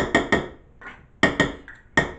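A metal spoon knocking against a measuring cup over a baking dish, knocking stuck graham cracker crumbs off the cup. It makes sharp, ringing taps: a quick run of three or four, then another run about a second later.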